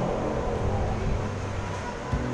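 Low, steady background rumble with no words.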